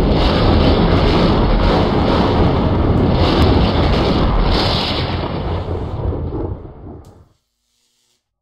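Loud, continuous rumbling and crackling sound effect, with brighter crackles flaring up now and then. It fades over its last two seconds and cuts off about seven seconds in.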